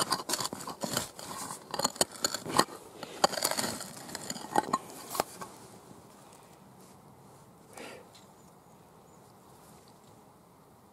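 A hand digging tool scraping and chopping into stony soil, with dense crunches and clicks of earth and small stones for about five seconds. After that, only faint rustling as the loosened soil is picked over by hand.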